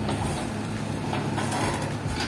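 Diesel engine of a JCB backhoe loader running steadily as the machine digs.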